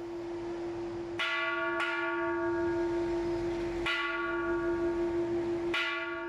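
Bronze temple bell struck four times, each stroke ringing on over a steady, sustained hum.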